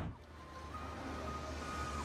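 A short whoosh at the start, then soft background music: a steady low drone with a few held high notes that change pitch, and no beat.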